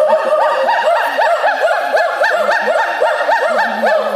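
Hoolock gibbons calling loudly: a rapid series of rising-and-falling whoops, several a second, with overlapping series that suggest more than one animal calling together.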